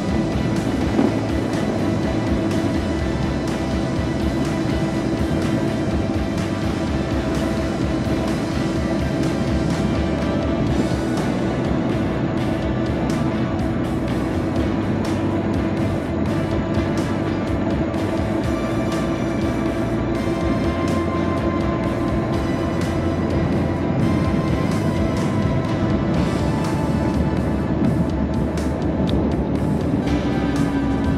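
Steady whine of an electric high-speed mobility scooter's motor cruising along a paved road, with wind and road noise; the whine dips in pitch at the very end.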